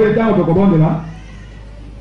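A man's voice preaching through a public-address system, trailing off about a second in, over a steady low held note. After that there is only faint background noise.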